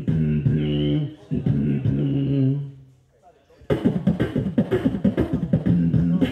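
A beatboxer humming held bass notes with short breaks, falling silent for a moment, then launching about two-thirds of the way in into a fast run of percussive beatbox beats.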